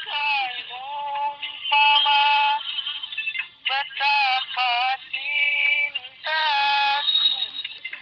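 A high voice singing a dangdut song in phrases that waver and bend up and down, with short breaks between them.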